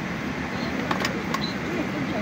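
Steady airliner cabin noise with passengers chattering in the background, and two or three sharp clicks about a second in.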